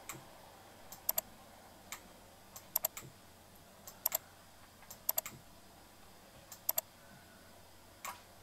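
Light clicks from a computer's controls, mostly in quick pairs (press and release), about one pair a second, while a satellite map is moved around on screen.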